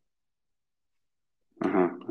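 Near silence, then a man's voice starting to speak near the end.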